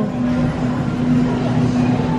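Steady low electrical hum from a refrigerated glass-door freezer display case, over the general noise of the store.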